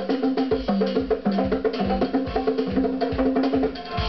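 Live band music: congas played by hand over sustained pitched notes, with a steady low beat.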